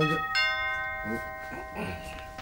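Two-tone doorbell chime: a higher ding, then a lower dong about a third of a second later, both notes ringing on and fading.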